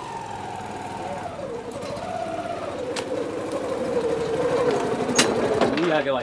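Yamaha Gladiator motorcycle's single-cylinder engine running as the bike rolls in and slows. Its note drops over the first couple of seconds, then it runs steadily, growing louder as it comes close. There is a sharp click about five seconds in.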